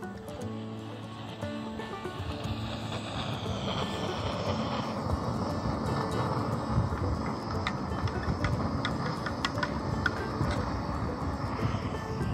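Canister camp stove burning with a steady rushing noise under an enamel mug. A spoon clinks against the mug several times in the second half, as it is stirred.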